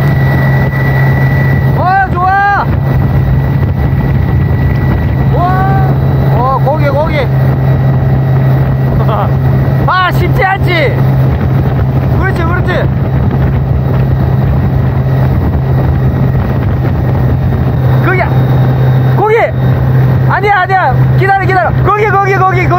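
Tow boat's engine running at a steady towing speed, one constant low drone, over the rush of water from its wake.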